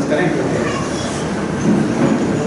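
Indistinct, low speech over a steady background noise.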